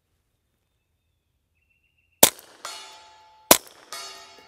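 Two suppressed 9mm shots from a Ruger PC Charger pistol, the first about two seconds in and the second about 1.3 seconds later. Each is a sharp crack. About half a second after the first, a struck steel plate downrange rings out and fades, still ringing at the second shot.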